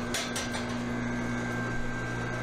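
Steady mechanical hum of a stainless-steel bulk milk cooling tank running with its agitator stirring the milk, with a few light clicks in the first half second as the tank lid is handled.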